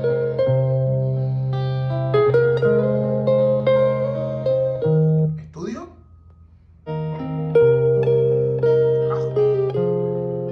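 Music with plucked, guitar-like notes playing from a portable Bluetooth speaker. Around five and a half seconds in it nearly stops for about a second, then resumes.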